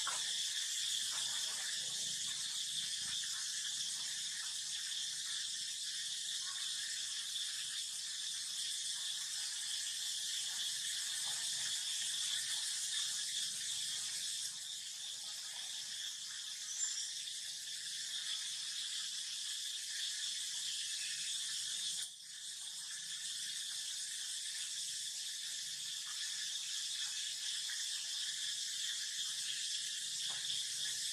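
Steady, high-pitched chorus of insects buzzing without a break, with a brief dip about three quarters of the way through.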